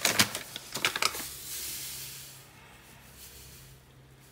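Granulated sugar being poured into a bowl of ginger and water: a soft, high hiss that fades out about two and a half seconds in, preceded by a few light clicks and taps.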